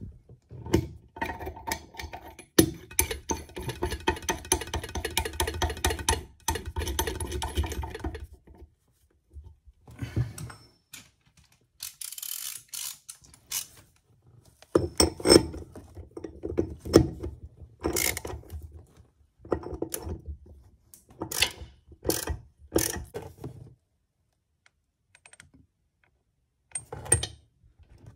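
Metal clicking and rattling as a tap back nut is run up the tap tail and tightened with a long back nut spanner under a basin. The sound is a steady run of rapid clicks for several seconds near the start, then a pause, then scattered separate clicks and knocks.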